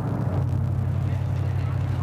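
A car driving: a steady low engine and road drone, with a slight shift in its pitch about a third of a second in.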